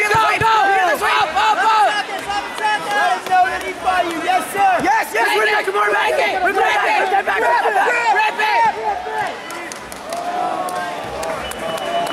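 A crowd of spectators and coaches shouting over one another in a large gym hall, easing off about nine seconds in. A thin, steady high tone starts near the end.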